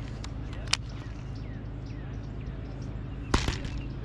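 A fishing rod is cast, a short swish about three seconds in, after faint clicks from the baitcasting reel being handled. A steady low hum runs underneath.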